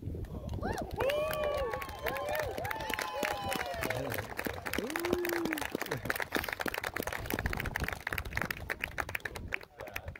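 A crowd of guests clapping, with several short whooping cheers in the first few seconds.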